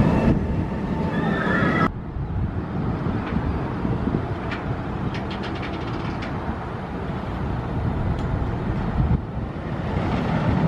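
Steel inverted roller coaster train rumbling along its track, cut off abruptly about two seconds in. After that comes a steadier, quieter low rumble with a brief run of faint rapid clicks about halfway.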